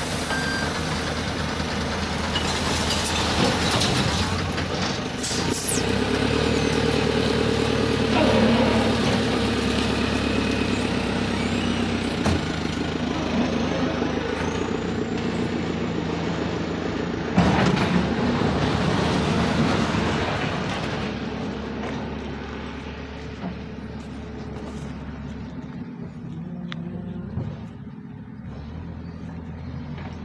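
Heavy diesel machinery, a JCB backhoe loader and a garbage truck, running steadily while the burnt rubbish is loaded. A loud burst of noise comes just past the middle, and the engine sound grows quieter over the last third.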